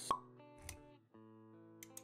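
Intro jingle: a sharp pop sound effect just after the start, then background music with held notes that briefly drops out about a second in.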